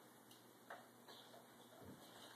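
Near silence: room tone with a couple of faint taps and a soft low thump near the end, from a toddler's bare feet and hands on a wooden TV stand as he climbs onto it.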